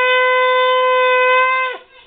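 A curved brass horn blown in one long steady blast, rich in overtones, that sags in pitch and cuts off near the end.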